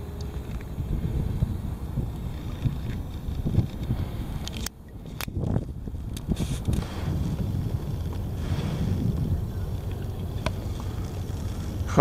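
Wind rumbling on the microphone of a small camera on a kayak out on choppy sea, with a few small knocks; the noise dips briefly a little under five seconds in.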